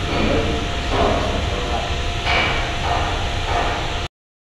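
Simulated binaural auralisation of industrial noise: a steady low factory-machine rumble with occasional hammer knocks and a voice reading aloud, heard through a modelled room with an open door. The playback cuts off suddenly right at the end.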